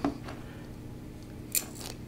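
Fishing pliers' cutters snipping the tag end of a braided-line knot: two short sharp snips, one at the start and one about a second and a half in, with quiet handling in between.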